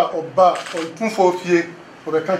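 Speech: a person talking.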